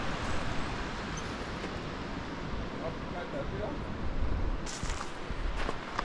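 Steady rushing of water cascading down a rocky hillside. A low rumble of wind on the microphone swells about four seconds in, and a few short clicks come near the end.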